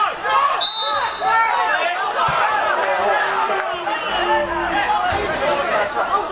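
Several men shouting over one another on a football pitch, with a short referee's whistle blast just under a second in as play stops for a foul.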